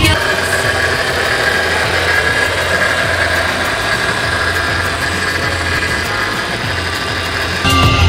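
Audi A6 V6 engine idling steadily, heard with the hood open.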